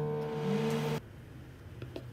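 Dial-timer microwave oven switched on and running with a steady electrical hum and fan hiss, cutting off suddenly about a second in. A few faint knife scrapes on bread follow near the end.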